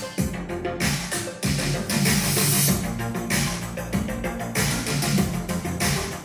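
Instrumental music with a steady beat and strong bass, played through the Samsung Sero TV's built-in 4.1-channel speaker system with subwoofer as a demonstration of its sound.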